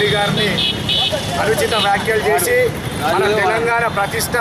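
A man speaking Telugu in a loud, continuous address, with a steady hum of street traffic underneath.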